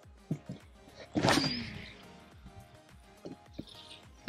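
A cast with a baitcasting rod and reel: a sharp swish about a second in, then the reel's spool whirring down in pitch as the line pays out. Light clicks come before and after it, under faint background music.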